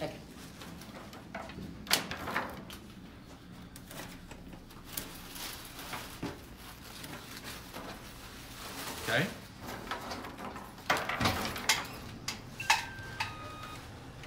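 Rose stems rustling and snapping with sharp clicks as they are handled and pushed into a curly willow wreath base, one click about two seconds in and a cluster in the second half. Near the end, a short electronic chime of a few stepped tones.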